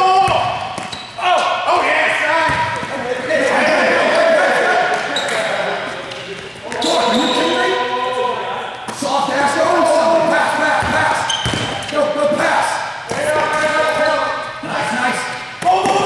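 Basketball bouncing and players moving on a hardwood gym floor during a live defensive drill, with players shouting calls throughout, in a large gym hall.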